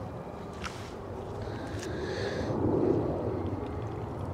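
Wind buffeting the microphone, a steady rumbling noise that swells in a gust in the second half.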